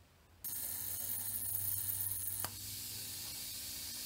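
A steady hiss over a low hum from the homemade test-tube cathode ray tube rig running on high voltage. It starts suddenly about half a second in. A sharp click comes about two and a half seconds in, after which a quieter hiss continues.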